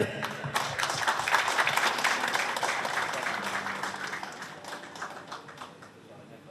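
Audience applauding, many hands clapping together; the applause starts about half a second in and dies away toward the end.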